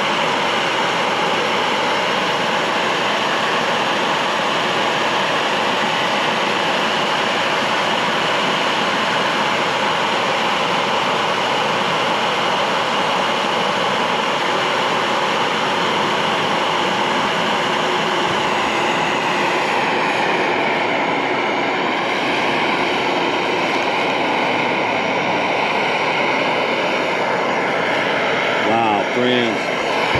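Jetboil Flash canister stove burner running steadily at full flame under a one-litre cup holding one cup of water. About two-thirds of the way through the sound changes as the water comes to the boil.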